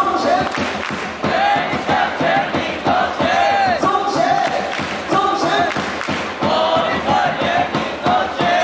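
Baseball stadium crowd chanting and singing along to a batter's cheer song played over the PA, with the music underneath, continuous and loud.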